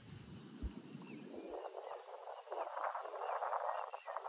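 Outdoor riverside ambience with faint, scattered bird chirps and a rustling noise that builds in the second half.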